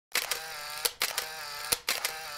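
Countdown sound effect: a short buzzing whir that ends in a sharp click, repeated a little under once a second, one for each number of the countdown.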